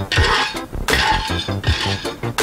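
Background music with a steady beat over peanuts being dry-roasted in a nonstick frying pan, a wooden spatula pushing them so they rattle and scrape across the pan in two short spells.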